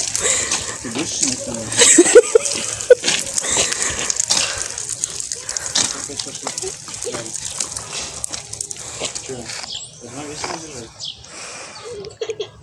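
Short, indistinct snatches of voices over a steady hiss, with scattered faint clicks and scuffs; the loudest voice fragments come about two and three seconds in.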